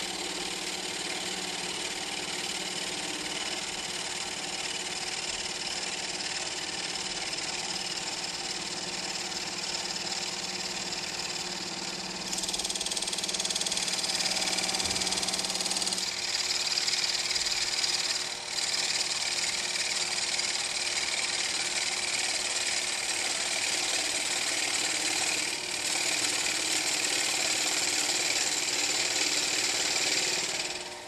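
Benchtop metal lathe running steadily with a motor hum, its tool taking light cuts on a spinning yellowheart blank. The cutting hiss grows louder about twelve seconds in and louder again a few seconds later, with two short breaks.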